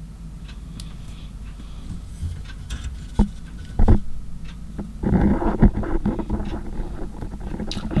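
Plastic model-kit sprues handled in the hand: scattered light clicks and taps, then a longer scraping rustle of plastic at about five seconds in.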